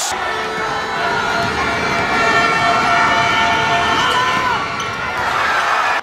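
Live crowd noise in a sports hall during a basketball game: a dense wash of spectator sound with long held tones at several pitches, and one tone that rises and falls about four seconds in.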